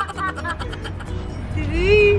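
Voices and background music over a steady low rumble in a car cabin, with a short rising vocal sound near the end.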